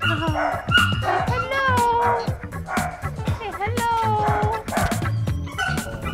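Puppies whimpering and yipping, with long rising-and-falling whines, over background music.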